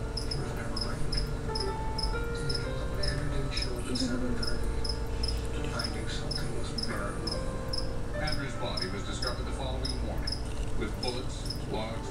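A cricket chirping steadily, short high chirps about two and a half times a second, over a low hum and faint background voices.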